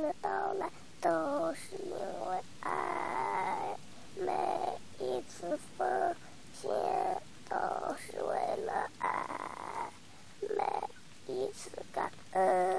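A voice singing a slow song in drawn-out phrases with short breaks between them, the pitch wavering on the held notes.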